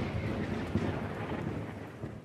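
Fading tail of a boom sound effect in a logo intro: a noisy rumble slowly dying away.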